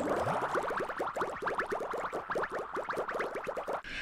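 Short synthesized music sting for an animated logo: a dense flurry of quick rising notes that stops shortly before speech returns.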